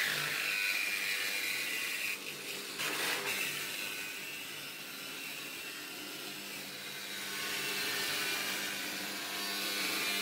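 Cordless reciprocating saw cutting through the thin sheet-steel side of a gun safe, running steadily with the blade chattering against the metal. It eases off briefly about two seconds in, then carries on.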